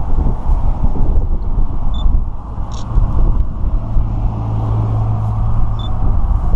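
Loud, uneven low rumble of outdoor noise, with a steady low hum joining from about four seconds in.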